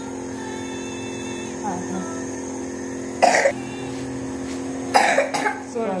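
A child coughing through a nebulizer mask during an asthma treatment: one loud cough about three seconds in, then a quick run of several coughs around five seconds. A steady hum runs underneath.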